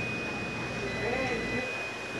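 Steady low hum of laundromat machines with a thin, steady high-pitched whine over it, and a faint voice in the background about a second in.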